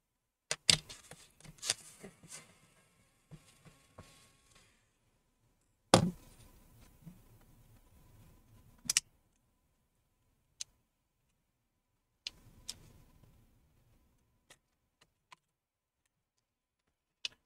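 Scattered sharp clicks and knocks of plastic and metal laptop parts being handled in gloved hands, with light rustling between them; the loudest clicks come about a second in, at about six seconds and at about nine seconds.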